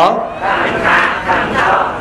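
A crowd of many voices reciting a phrase together in unison, answering a single leading voice.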